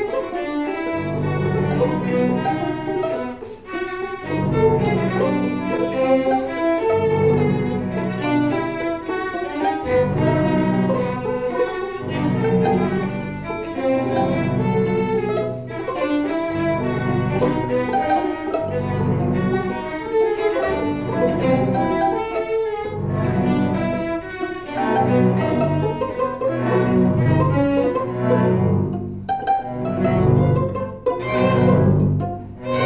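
A small string orchestra of violins, cellos and double bass plays a contemporary piece under a conductor, in a rehearsal run through its closing bars. The low strings move in short repeated blocks beneath busier upper lines.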